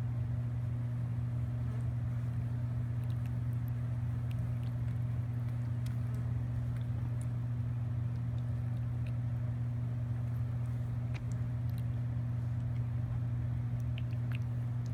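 A newborn piglet lapping and slurping milky slop from a plastic bowl, heard as faint scattered wet clicks and smacks, under a steady low hum that is the loudest sound throughout.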